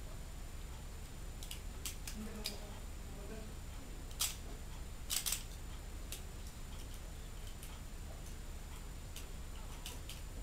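Scattered hard plastic clicks and snaps from a Transformers Animated Deluxe Bumblebee action figure's parts being handled and moved, about nine in all, the loudest about four and five seconds in.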